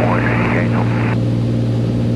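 Steady cabin drone of a Beechcraft A36 Bonanza's piston engine and propeller in cruise flight, an even low hum that doesn't change.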